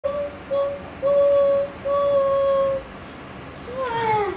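A child singing four long notes on about the same pitch, each longer than the one before, the last held close to a second. A short downward-sliding vocal sound follows near the end.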